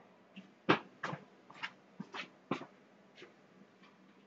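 Footsteps of a person walking about: about six short, faint, irregular steps.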